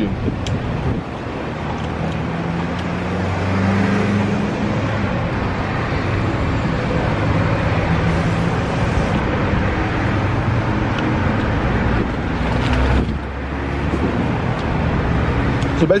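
A car engine idles with a steady low hum over traffic noise. The hum grows a few seconds in and drops away briefly about thirteen seconds in.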